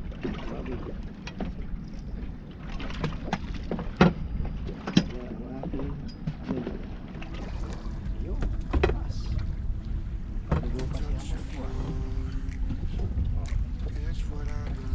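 Knocks and clatter of fishing gear and the catch being handled on a small boat's deck, two sharper knocks about four and five seconds in, over a steady low rumble of wind and water against the hull.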